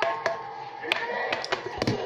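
Several sharp taps and clicks from small objects handled on a glass tabletop: a wallet and a lidded plastic container.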